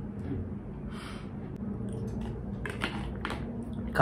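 Quiet room with a soft breath about a second in, then a short run of light clicks and rustles near the end as a plastic water bottle is picked up off the table.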